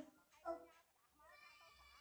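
Near silence: a pause between speech, broken once about half a second in by a brief, faint pitched sound.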